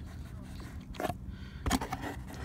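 Buttons on a Garmin Striker 4 fish finder being pressed: a sharp click about a second in and a quick run of clicks near the end, over a low steady rumble.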